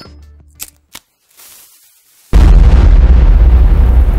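The last sharp hits of an intro music sting, a short near-silent gap, then about two seconds in a sudden, very loud, deep boom-like sound effect that keeps going, opening a logo card.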